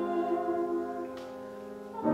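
Solo female voice singing in a classical style, holding a note with a slight vibrato that fades away over the second half.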